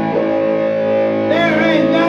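Blues played on a distorted Kramer electric guitar, a chord ringing on. A man's sung, wavering note comes in about a second and a half in.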